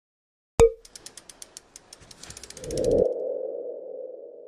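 Logo ident sound effect: a sharp click, then a run of quick ticks that speed up for about two seconds, then a swell into a single ringing tone that fades away.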